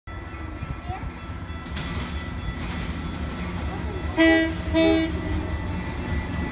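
Metra commuter train approaching with a steady low rumble; the diesel locomotive's multi-note air horn sounds two short blasts about four seconds in.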